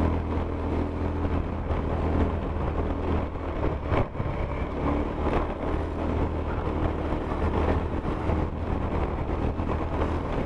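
Motorcycle engine running at a steady riding pace, with wind and road noise on a handlebar-mounted camera. A short click and a brief dip come about four seconds in.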